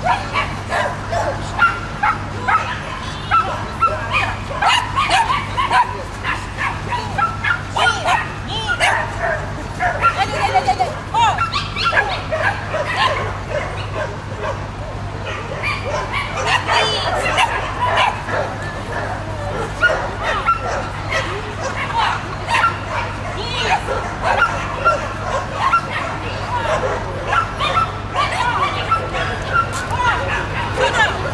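Dog barking in short, high yaps, over and over, with little let-up.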